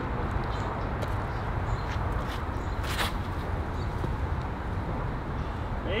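Steady outdoor background noise, mostly a low rumble, with a single sharp click about halfway through.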